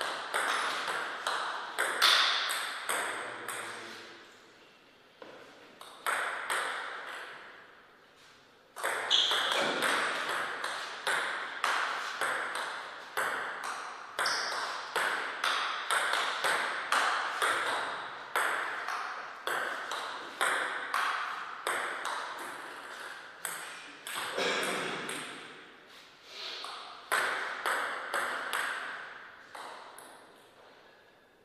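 Table tennis rallies: the ball clicking back and forth between bats and table in quick succession, each hit ringing on in the hall. Short pauses between points break the play about four and eight seconds in.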